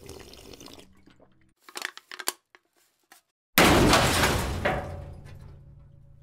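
Logo-animation sound effects: a few short crackling hits, then a loud sudden crash about three and a half seconds in that fades away over a couple of seconds.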